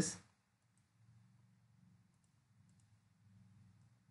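A few faint computer mouse clicks, spread out, over a faint low hum.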